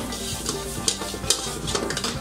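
Stir-frying in a steel wok over a gas flame: a metal spatula scrapes and strikes the wok about every half second while the food sizzles.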